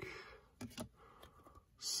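Glossy trading cards sliding against each other as a stack is shuffled by hand, with a few soft clicks of card edges.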